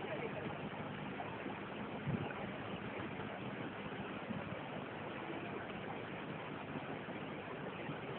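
Steady rushing of water churning in a stone canal lock chamber, with a low steady hum beneath it.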